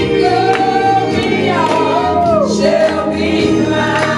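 Gospel music: a congregation singing together, with long sung notes that bend up and down over a steady low accompaniment.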